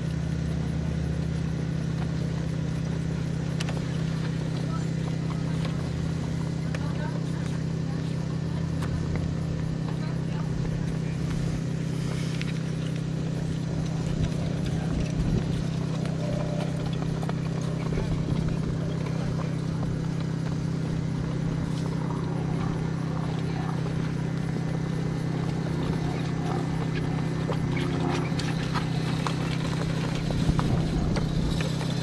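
Hoofbeats of a pair of Lipizzaner horses moving at pace on grass while pulling a carriage, over a steady low hum.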